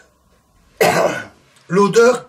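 A man clears his throat once, a single short, harsh cough-like burst about a second in.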